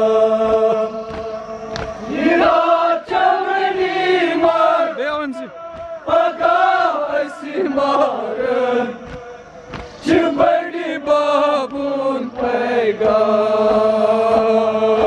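Kashmiri noha, a Shia mourning lament: a male reciter chants the verses with a group of men singing along. It opens on a long held note, then moves into a wavering, melismatic melody line.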